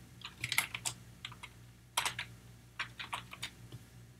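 Computer keyboard typing: an irregular run of keystroke clicks, with a sharper click about halfway through.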